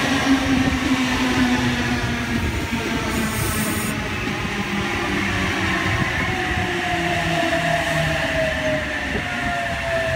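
Sydney Trains OSCAR (H-set) electric multiple unit rolling slowly past as it comes into the platform, with wheel-on-rail running noise and an electric motor whine that falls gradually in pitch as it slows. A brief high hiss sounds about three seconds in.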